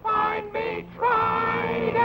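Cartoon cat and dog singing together with musical accompaniment: a few short sung notes, then a longer held line from about a second in.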